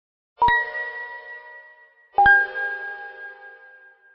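Two metallic clangs, each a quick double strike that rings on and fades slowly. The second comes nearly two seconds after the first and rings at a lower pitch.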